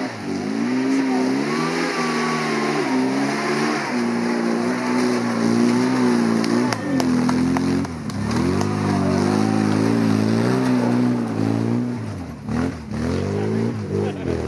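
Car engine revving hard as it climbs a steep, loose, rocky trials hill, the revs surging up and down with brief dips about two, four and eight seconds in, then falling away near the end as the car pulls off up the lane.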